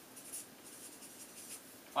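Marker pen writing on flip-chart paper: a series of short, faint strokes.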